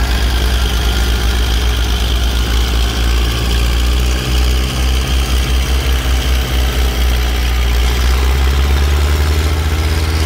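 Tractor diesel engines running under heavy load while pulling plows through sticky ground, a steady deep rumble with some pulsing in the middle. A John Deere grows a little louder as it passes close near the end.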